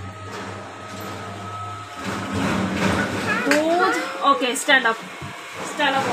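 Brief indistinct talking in the middle, with a low steady hum under the first two seconds.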